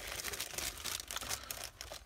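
Clear plastic bags around plastic model-kit sprues crinkling as hands shuffle and lift them in a cardboard box: a continuous run of small crackles.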